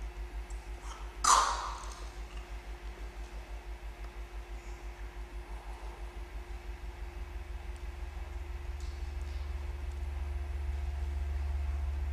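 Low electronic drone pulsing a few times a second, the pulsing smoothing into a steadier hum that grows louder over the last few seconds, over a faint steady higher tone. One sharp metallic-sounding strike rings out briefly about a second in.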